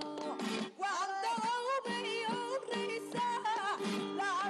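A woman singing a flamenco-style song, her voice bending and ornamenting each note, over strummed Spanish guitar.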